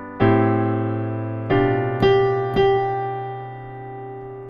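Piano playing slow chords, a G chord moving to a C major 13 (add 4), four strikes each left to ring and fade.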